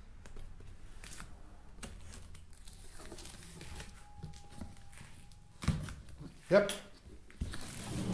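A large cardboard box being handled: faint rubbing and light taps of hands on the cardboard, then two louder short scraping rustles, about two-thirds of the way through and near the end, as the box is tipped over.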